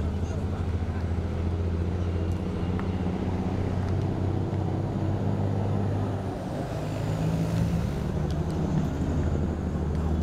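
A steady low motor hum, like an engine running nearby, with faint distant voices.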